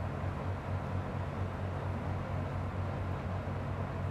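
Steady low hum and rushing air of a laminar airflow cabinet's blower running, with no distinct handling sounds.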